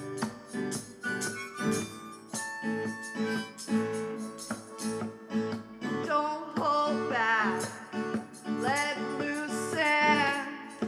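Live band playing a pop song: a harmonica lead over keyboard and acoustic guitar with a steady beat. From about halfway through, a wavering lead line grows louder.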